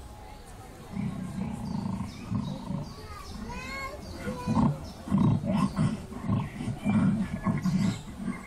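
Loud snoring sound effect of an animatronic sleeping giant, starting about a second in as a series of long, rough snores played through the attraction's speakers.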